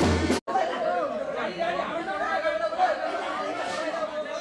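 News music with a drum beat cuts off suddenly within the first half second. Then a crowd of mourners: overlapping voices with a woman's long, wavering wail held above them.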